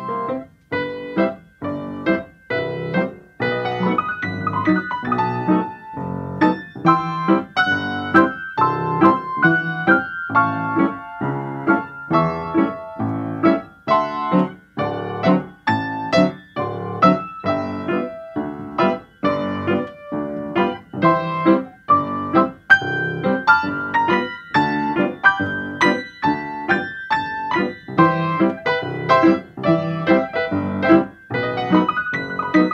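Solo piano music: a melody over chords, played at a steady, moderate pace of about two notes or chords a second.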